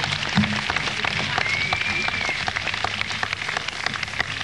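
Concert audience applauding after a song, a dense steady patter of clapping, with a brief high whistle rising and falling near the middle and a low steady hum underneath.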